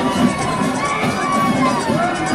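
Crowd of spectators cheering and shouting, with a marching band's drums going underneath.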